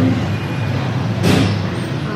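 Steady low rumble of background road traffic, with a short burst of hiss a little over a second in.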